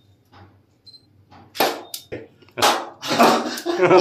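A man bursts into loud laughter near the end. Before it come two sharp, loud bursts about a second apart.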